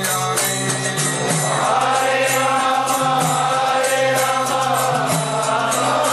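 Devotional kirtan: voices chanting a mantra, with one long held line in the middle, over a steady low drone, and jingling hand percussion keeping an even beat.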